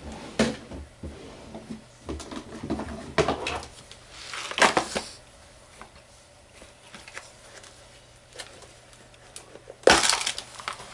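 Rustles and small knocks of craft supplies being handled and set down on a work surface, busiest in the first half with the loudest rustle about halfway through, then a sharp knock near the end.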